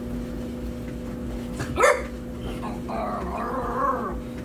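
A puppy barking during rough play: one sharp bark about two seconds in, then a drawn-out whining yap near the end.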